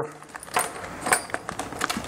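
Small mounting-kit hardware (flanges and flathead screws) clinking together in a clear plastic bag as hands sort through it, with the bag crinkling: a string of irregular light clicks.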